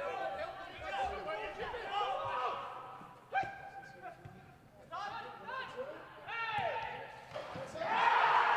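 Footballers shouting to each other on the pitch, their calls echoing around an empty stadium, with a sharp thud of the ball being kicked about three and a half seconds in.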